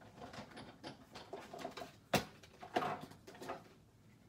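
Plastic cutting plates and an embossing folder being pulled out of a hand-cranked Big Shot machine and handled, with scattered small knocks and rustles and one sharp plastic clack a little after two seconds in.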